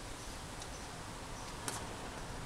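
Quiet outdoor background noise with one short, sharp click near the end.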